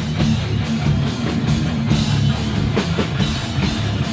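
Hardcore punk band playing live: distorted guitars and bass over fast, driving drums, with no vocal line heard.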